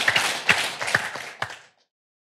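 Audience applauding, many hands clapping; the applause fades and cuts off abruptly about three-quarters of the way through.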